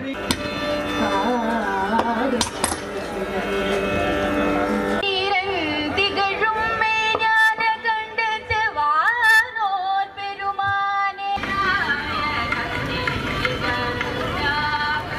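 Devotional singing in Carnatic style. The middle part is a woman's solo voice through a microphone, with long, bending held notes. The sound changes abruptly about five seconds and about eleven seconds in.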